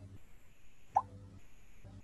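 A single short pop from the Quizizz game lobby about a second in: the sound effect that signals a new player joining the game. It plays over faint low room hum.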